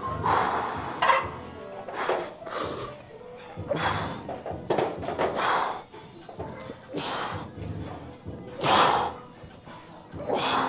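A man breathing out hard and forcefully, about once a second and unevenly, as he works through a set of dips on a dip machine. The loudest breath comes near the end. Music plays faintly in the background.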